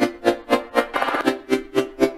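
Synthesizer chord from the Serum software synth, played as a steady rhythmic pulse about four times a second, its level and tone shaped by LFO modulation.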